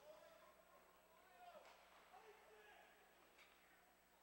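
Near silence: faint room tone of the ice arena.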